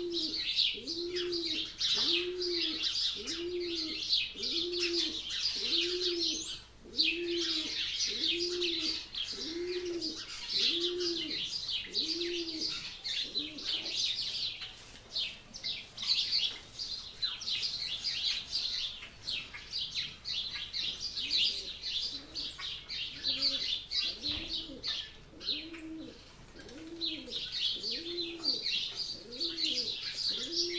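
Birds chirping busily and without pause, with a low, short cooing call repeated a little faster than once a second; the low calls stop for several seconds in the middle, then start again.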